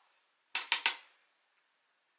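Three quick, sharp taps about half a second to one second in, from handling a makeup compact and powder brush.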